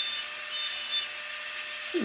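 Handheld rotary carving tool spinning a diamond bit and grinding lightly on wood, a steady, even hiss.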